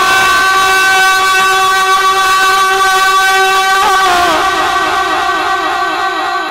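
A man's voice holding one long sung note, steady for about four seconds, then breaking into wavering turns of pitch in a melodic recitation.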